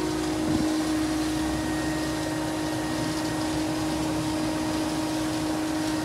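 Pool equipment running steadily: a variable-speed pool pump and heat pump giving a constant hum with a steady whine.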